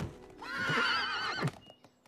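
A horse's whinny from the cartoon's winged horses: one wavering call of about a second, starting shortly after a thump as the chariot sets down.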